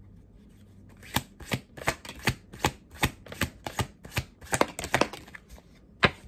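A deck of tarot cards being shuffled by hand: a run of crisp card taps, about two or three a second, starting about a second in and stopping about five seconds in.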